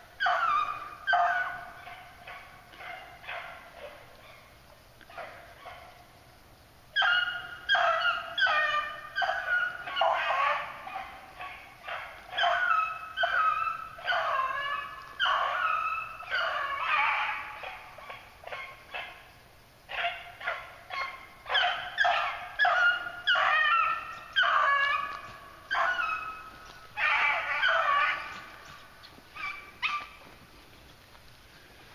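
Young beagle hounds baying as they run a rabbit's track, their calls coming in quick strings. A brief lull a few seconds in, then near-continuous baying from about seven seconds on.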